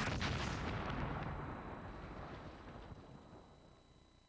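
A missile warhead explodes in a sudden blast at the start. A long rumble follows and fades away over about four seconds.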